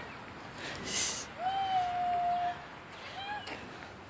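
A small child's voice calling from a distance: one long held note of about a second, then a shorter rising-and-falling call near the end.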